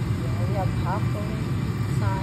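A steady low hum, like a running motor, with faint voices over it.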